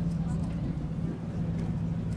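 McLaren P1 GTR's twin-turbo V8 idling steadily at low revs, with a deep even tone.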